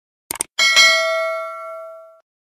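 Subscribe-button animation sound effect: a quick burst of mouse-style clicks, then a bright notification-bell chime of several tones that rings and fades over about a second and a half.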